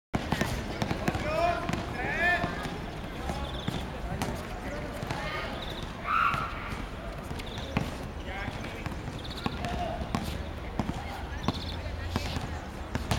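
A volleyball repeatedly set overhead with the fingertips: short sharp slaps of the ball on the hands about every second, over voices in the background.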